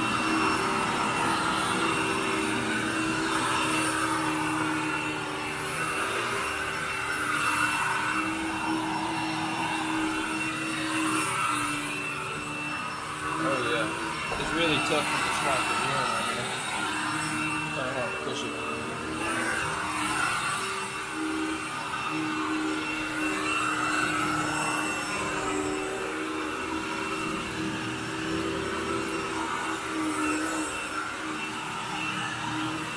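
Commercial upright vacuum cleaner running steadily while being pushed over soiled carpet to pull out dry soil, a steady motor hum with a high whine over the rush of air.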